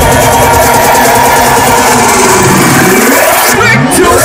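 Very loud electronic dance music from a live DJ set, played over a large stage sound system and recorded from within the crowd. A rising sweep comes in near the end.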